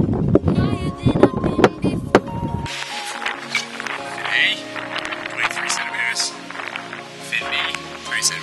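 Wind buffeting the microphone, with sharp knocks from hands working a stuck fin out of a windsurf board. After about two and a half seconds it cuts to a background music track.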